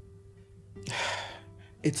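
A woman's heavy sigh, one breathy exhale about a second in, over a quiet sustained music bed.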